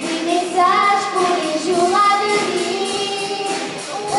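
Young girls singing a pop song into microphones with live band accompaniment, the melody carried in sustained, gliding sung notes.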